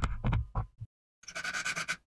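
A pine dowel being forced and twisted into its wooden upright, wood rubbing and knocking on wood, stops a little under a second in. After a short gap, a palm sander starts scratching across the pine and cuts off suddenly at the end.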